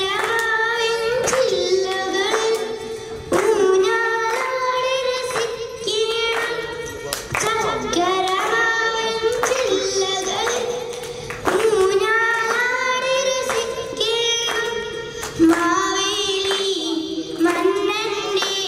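A girl singing solo into a handheld microphone, a melody of long held and gliding notes phrased in lines a few seconds apart. Short sharp beats recur behind the voice.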